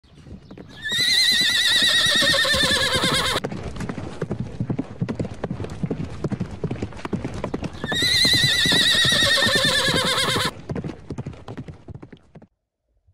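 Horse hooves clip-clopping in a quick steady run, with two long, quavering horse whinnies, one about a second in and one about eight seconds in, each cut off sharply.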